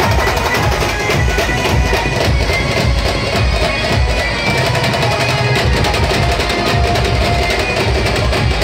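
Loud live band-party music: a fast, pounding drum and percussion beat under a continuous melody, played without a break.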